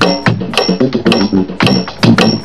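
Electronic drum kit played in a busy funk groove, with quick strikes several times a second over a low pitched bass part.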